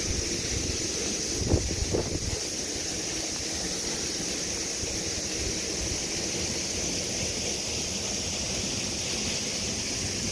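Steady rushing of a rain-swollen river with a low rumble of wind on the microphone, under a constant high-pitched drone of cicadas singing after the rain. A couple of soft thumps come about one and a half to two seconds in.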